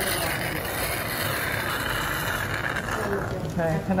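Steady hissing noise, fading out a little past halfway, with a voice starting near the end.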